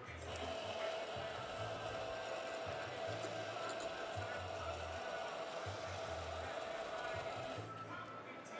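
Electric espresso grinder running steadily as coffee is ground into a portafilter, starting just after the beginning and cutting off shortly before the end. Music with a repeating bass beat plays underneath.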